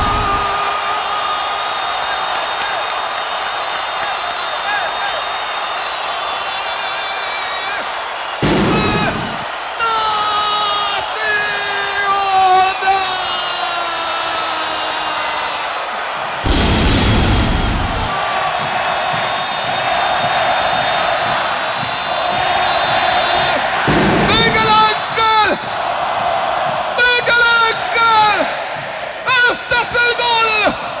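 Stadium crowd noise under a radio commentator's voice making long, sliding, drawn-out calls, turning to quicker excited speech near the end. A deep boom comes about every eight seconds.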